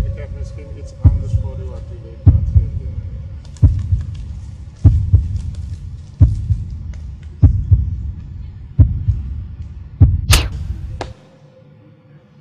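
Soundtrack heartbeat effect: deep, slow thumps about every 1.2 seconds, some doubled, over a faint steady hum. A sharper hit comes near the end, then the thumping cuts off suddenly.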